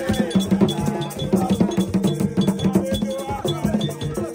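Gagá drumming: several hand drums struck with the palms in a dense, driving rhythm, with a metallic clink like a cowbell repeating over the drums.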